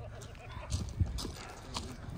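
A carved pumpkin smashing down on a person lying on the ground: a dull hollow thud about a second in, with a few fainter knocks around it.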